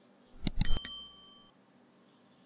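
Subscribe-button animation sound effect: a few quick mouse clicks, then a bright bell ding that rings for under a second and cuts off suddenly.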